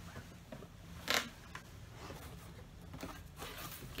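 A cardboard box and its paper packaging being handled and shifted, with one short, sharp rustle about a second in and softer rustles after.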